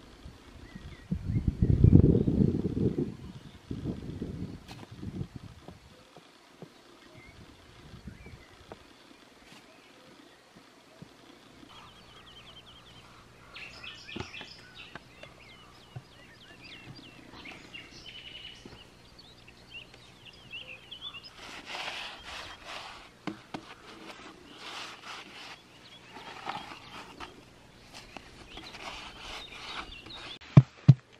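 Spade scraping and knocking in earth while post holes are dug, in short clusters of strokes through the second half, with birds chirping. A loud low rumble comes about two seconds in.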